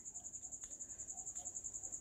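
Faint, steady high-pitched trill pulsing about ten times a second: a cricket chirping in the background.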